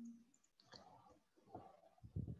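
Near silence with a couple of faint clicks from computer input while a function is being typed in.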